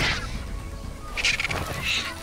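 Marabou storks squabbling, with two short rasping bursts about a second in and near the end, over background music.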